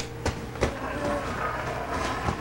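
Toy figures being handled and knocked together, a few sharp knocks and clatters in the first second, over a steady low hum.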